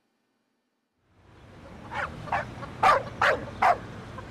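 A dog barking several times in quick succession, the barks growing louder toward the end, over a low background hum that fades in after about a second of silence.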